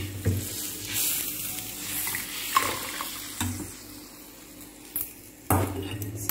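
Hot tempering sizzling in a small iron tadka pan, a steady hiss strongest in the first couple of seconds. Several knocks and clinks of metal utensils against the pans come through it.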